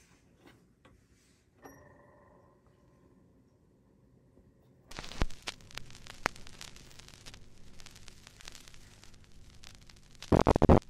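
A turntable's stylus set down on a spinning vinyl record about five seconds in: a soft landing thump, then steady crackle with sharp pops from the record's surface noise in the lead-in groove. Before it, faint clicks and a short ringing knock as the tonearm is handled.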